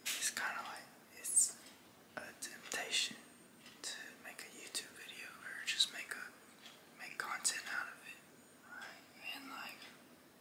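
A man whispering close to the microphone, in short breathy phrases with pauses between them.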